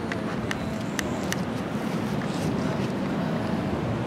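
Steady rushing noise of ocean surf and wind, with three short faint clicks in the first second and a half.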